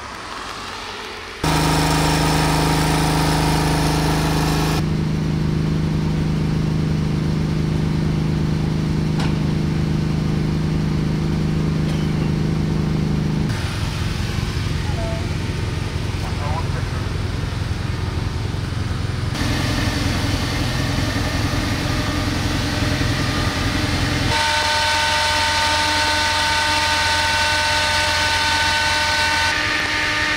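A fire engine's motor running steadily at a constant speed, its tone changing abruptly several times between shots, with voices underneath.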